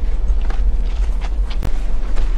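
A steady low rumble with a few faint footsteps over it.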